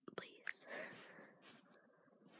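A person whispering quietly, a short word such as "please".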